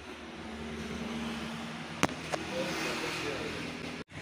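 Street noise with traffic, growing louder over the first second, with faint background voices and a sharp click about two seconds in.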